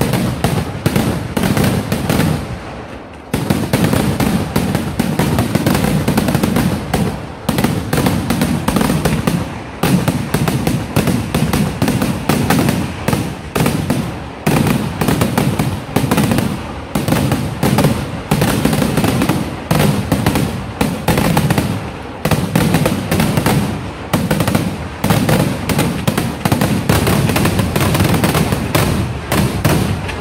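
Fireworks display: a dense, continuous barrage of bangs and crackling from shells fired one after another, with a short lull about three seconds in.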